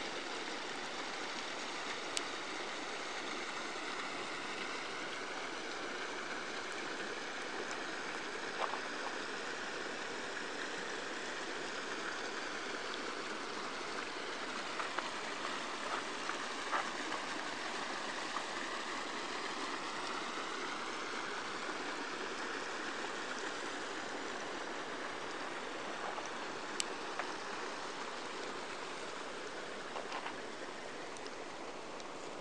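Glacial meltwater stream running in a channel cut into the ice, a steady rushing with a few brief clicks.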